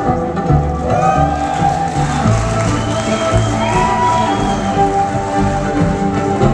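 Violin played live through a sound system, its notes sliding upward about a second in and again midway, over a backing of steady low sustained notes.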